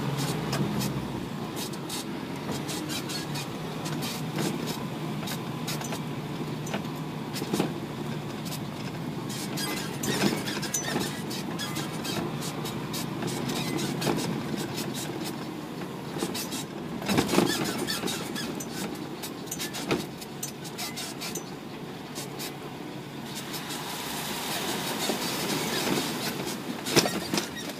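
Isuzu NPR350 4WD truck driving on a rough dirt track: a steady engine and drivetrain hum with many short knocks, clicks and squeaks throughout, a louder burst of knocks about 17 seconds in.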